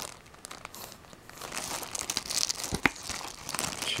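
Plastic-sleeved trading card booster packs crinkling as they are handled and moved about, growing busier after about a second, with a couple of sharp clicks about three seconds in.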